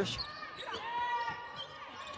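Game sound from a basketball court in a largely empty arena: a basketball bouncing on the hardwood floor, with a faint drawn-out high-pitched sound lasting about a second in the middle.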